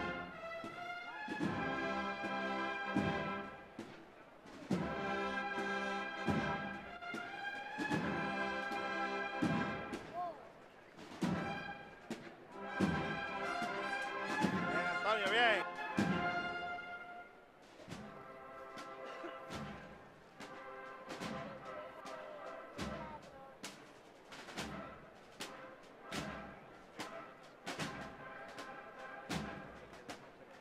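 Brass band playing a slow processional march: sustained brass chords over regular drum beats, with a quick ornamental flourish about halfway through, after which the music drops to a softer passage with the drum beat going on.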